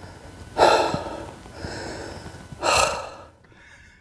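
A man breathing hard from the effort of climbing a steep stairway under load: two loud breaths, about half a second in and near three seconds, with a softer breath between.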